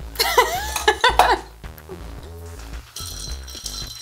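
Background music, with brief voices in the first second or so and ice clinking in a glass as a cocktail is stirred with a bar spoon near the end.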